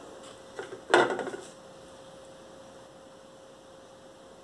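A single sharp clack with a brief rattle about a second in, from a hot glue gun being picked up off the table. A faint steady electrical hum runs underneath.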